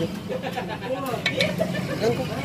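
Small metallic clicks and scraping of a Suzuki Nex scooter's kick-starter pinion gear being turned by hand in its CVT cover, over a steady low hum.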